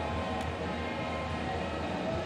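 Whitewater rushing steadily through the rapids of a slalom course, with faint background music under it.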